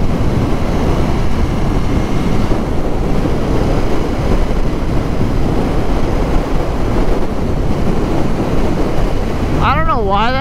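Steady wind roar on the microphone of a motorcycle cruising at about 55–60 mph, with the bike's engine and road noise blended in beneath it.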